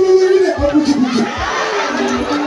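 A crowd cheering and shouting, with held, wavering voices over a low beat that thumps roughly every 0.8 seconds.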